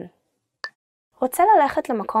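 Speech: a voice finishes a phrase, then a short pause broken by a single brief click, then speech starts again just over a second in.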